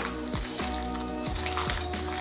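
Background music with held notes over a low bass line.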